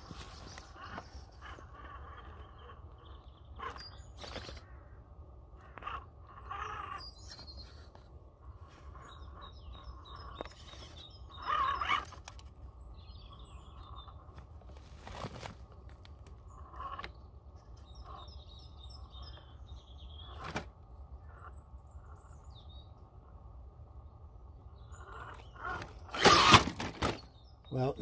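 Radio-controlled 1.9 scale rock crawler with a Hobbywing Fusion brushless motor, which the driver calls nice and quiet, crawling slowly over rock: a low, steady drivetrain hum with occasional knocks and scrapes of tyres on stone. A loud clatter comes near the end as the truck nearly falls off the rock.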